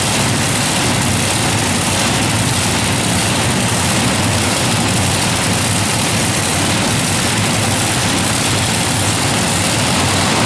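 The several supercharged V8 engines of a multi-engine modified pulling tractor idling together, loud and steady, with the tractor standing still before a pull.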